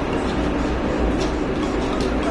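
Steady low rumble and hum of a ship's running machinery.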